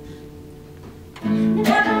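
Acoustic guitar notes ringing softly, then a loud strummed entry a little over a second in, with a woman's singing voice coming in just after.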